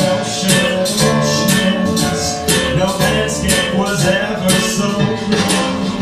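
A man singing a cabaret song into a microphone, over a rhythmic instrumental accompaniment.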